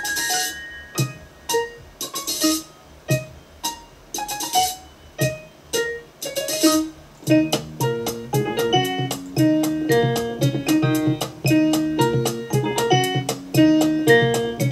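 1970s jazz-rock instrumental recording. It starts with sparse plucked and struck notes, each ringing out, and about halfway through turns into a peppy, busier passage of quick staccato interplay.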